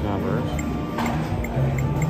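Casino floor ambience: slot-machine music and background voices, with a regular run of short electronic blips and a single click-chime about a second in, from the video keno machine as its touchscreen is tapped.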